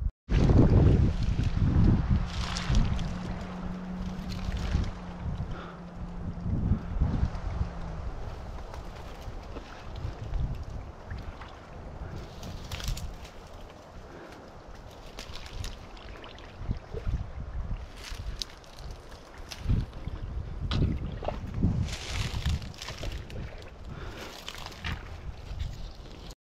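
Footsteps swishing and crunching through dense marsh grass and brush, with gusts of wind buffeting the head-mounted microphone, strongest in the first few seconds.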